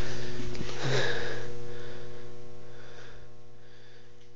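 A steady low hum made of several held tones, under a hiss that slowly fades, with a short breathy noise about a second in.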